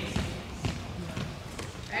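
Volleyballs bouncing on a sports-hall floor: a few short thuds in the big room, under faint background voices.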